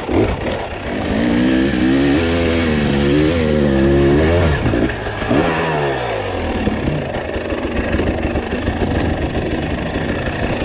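Dirt bike engine heard from the rider's on-board camera, revving up and down as the throttle is worked on the trail, with a sharp drop in pitch about five seconds in. In the last few seconds the engine note eases off into a rougher rush of running and trail noise.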